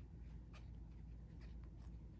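Faint scratching and a few light ticks of a thin steel crochet hook working fine thread, over a low steady hum.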